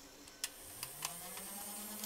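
Opened Nerf blaster switched on by hand: a click of the switch, then a faint low hum that rises in pitch and levels off, with a thin high whine and a few small clicks, as the blaster's circuit powers up.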